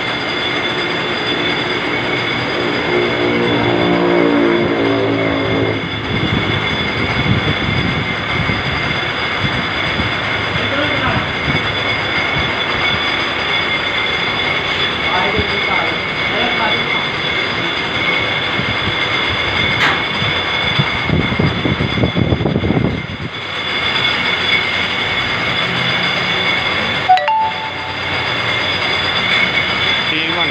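Surgical gauze rolling machine running steadily, its rollers and drive making a constant clattering noise with a steady high whine. A single sharp knock comes near the end.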